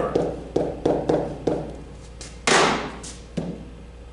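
Pen tapping and knocking against an interactive whiteboard's surface while numbers are written, with about five sharp taps in the first second and a half. About halfway through comes a short, loud rush of noise, then one more knock.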